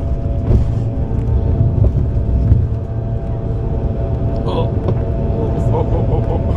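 Airliner cabin noise during the takeoff roll: engines at takeoff power with a deep, steady rumble from the wheels running down the runway, under a hum of several steady engine tones.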